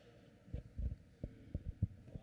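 A run of about six low, dull thumps at irregular spacing, starting about half a second in.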